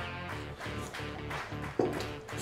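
Background music led by guitar, a steady backing track.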